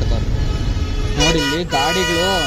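Street traffic with a low steady rumble, then a vehicle horn sounds one long steady honk starting just over a second in, with people's voices over it.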